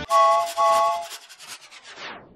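Electronic logo sting: two short chord-like tones, each about half a second, then a fast scratchy crackle that fades out near the end.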